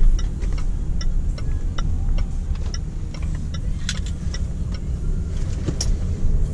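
Steady low engine and road rumble inside the cabin of a Range Rover Sport SDV6, whose engine is a 3.0-litre V6 diesel. Over it the turn-signal indicator ticks at about two and a half ticks a second for a right turn, stopping after about three and a half seconds. Two sharper clicks follow near the end.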